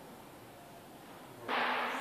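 Quiet room tone in a showroom. About one and a half seconds in, a sudden half-second rush of noise begins and runs straight into speech.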